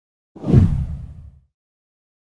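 A deep whoosh sound effect of an intro animation: it comes in suddenly, swells for a fraction of a second and fades away about a second later.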